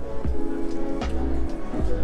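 Live piano playing very loudly close by: held chords over a low bass note.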